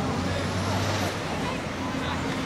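Low steady rumble of a heavy vehicle's engine, strongest in the first second, with distant voices calling.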